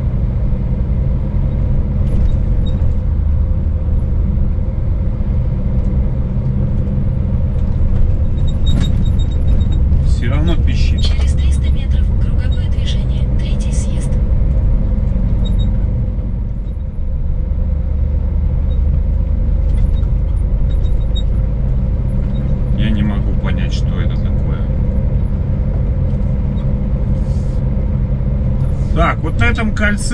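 Scania S500 truck's diesel engine running steadily under way, a constant low rumble.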